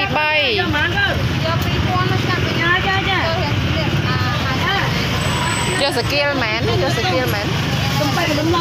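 Open-air market ambience: several people talking, over a steady low rumble like a nearby engine running.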